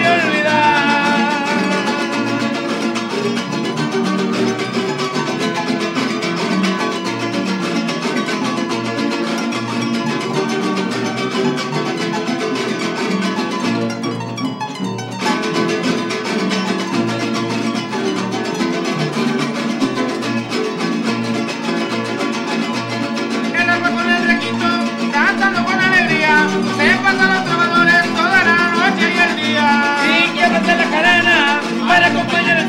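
A son jarocho played live on a Veracruz harp and small strummed jarocho guitars, with a steady strummed rhythm. A man sings at the very start and again through the last several seconds, with the middle instrumental.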